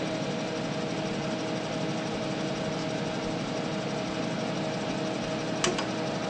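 Altair 8800b computer and its 8-inch floppy disk drive running: a steady mechanical whir and hum of cooling fan and drive motor during a retried boot from disk. A single sharp click near the end.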